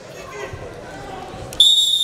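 Referee's whistle blown in one long steady blast starting about one and a half seconds in, the signal to start wrestling, over crowd chatter in a large hall.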